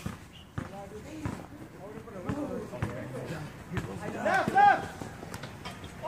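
A basketball bouncing on an outdoor hard court, heard as scattered single thuds, mixed with players' voices calling out across the court. A shout about four seconds in is the loudest sound.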